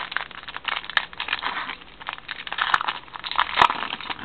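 Clear plastic wrapper of a football trading-card pack crinkling and crackling as it is torn open and the cards are pulled out. Irregular crackles run throughout, with a few sharper clicks; the loudest comes near the end.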